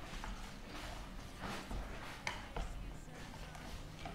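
Wire whisk stirring pancake batter in a plastic bowl, with faint, irregular taps and scrapes as the wires knock the bowl.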